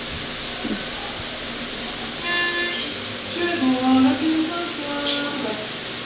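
A short instrumental introduction on a melodic instrument: after about two seconds of room noise, a held note sounds, then a brief melody of steady, sustained notes at changing pitches.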